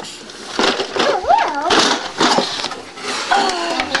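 High-pitched children's voices, wavering up and down, with a few light knocks.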